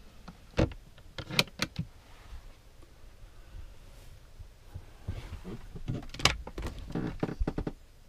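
Clicks and knocks of motorhome cabinet doors and catches being handled: a few near the start, then a quick run of them in the second half as an overhead locker door above the bed is unlatched and swung up.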